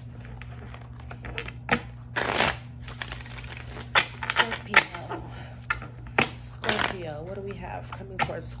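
A deck of tarot cards being shuffled by hand, in short rustling bursts with sharp card snaps every second or so.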